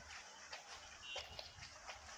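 Faint outdoor background noise with a few soft taps and a brief, faint high chirp a little after a second in.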